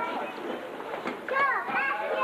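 Spectators' voices shouting and calling out at a boxing match, overlapping and not clearly worded, with the loudest burst of shouts about one and a half seconds in.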